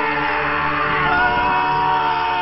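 Two men screaming together in one long, held scream of fright, with background music beneath.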